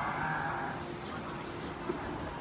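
Steady street-stall background noise, with a faint patch of voices in the first half-second and a single short click near the end.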